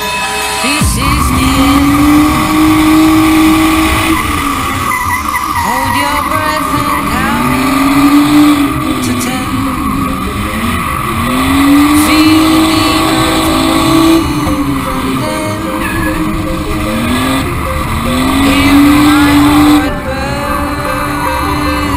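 Nissan Skyline R32 drift car heard from inside the cabin, its engine starting up loud about a second in and then revving up and holding high revs in four surges as it drifts, with tyres squealing.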